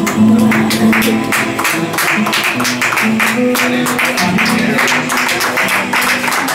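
Nylon-string classical guitar strummed in a quick, even rhythm, with low chord notes ringing under the strokes.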